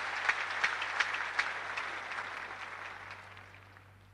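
A concert-hall audience applauding, the clapping dying away over the few seconds. A steady low hum from the old radio broadcast recording runs underneath.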